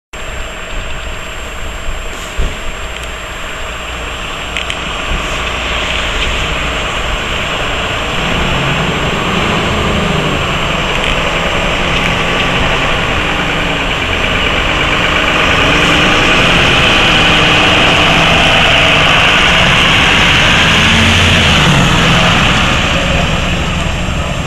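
Fire engine's diesel engine running and revving as it pulls out of the station and drives past. It grows louder, is loudest about two-thirds of the way in, then begins to fade.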